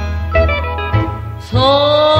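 Remastered old Korean pop song: band accompaniment with a strong bass line, then a singer comes in with a long held note about one and a half seconds in.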